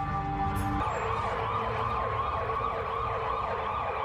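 Emergency-vehicle siren wailing in fast, repeated rising-and-falling sweeps. It takes over from held music tones about a second in, as a sound effect in the dance routine's soundtrack.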